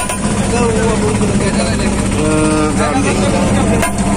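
A steady engine drone runs under the chatter of a crowd of young people, with one voice holding a note briefly about halfway through.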